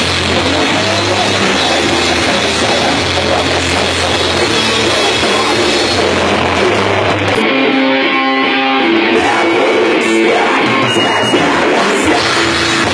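Live heavy metal band playing loud and distorted: electric guitars, bass and a drum kit. About seven and a half seconds in, the low end and the cymbal hiss drop out for about two seconds, leaving a few ringing guitar notes, before the full band comes back in.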